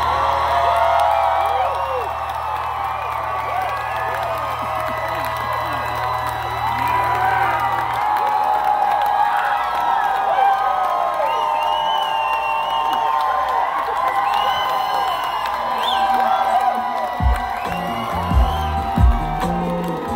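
Concert crowd cheering and whooping, many voices overlapping. A low held drone from the stage stops about eight seconds in, and near the end heavy low beats begin.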